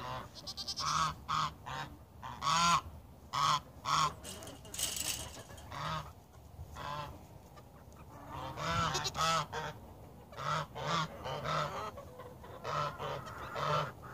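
Small goats bleating, a long string of short calls repeated in quick runs.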